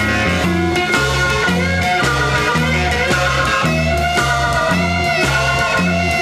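Instrumental stretch of a late-1960s psychedelic blues-rock song: a lead guitar playing held notes that bend in pitch over a repeating bass line and drums, with no singing.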